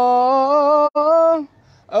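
A young man's voice singing an Islamic nasheed (inshad) unaccompanied, holding a long steady note. The note breaks briefly about a second in, continues for half a second more, then a short pause comes near the end.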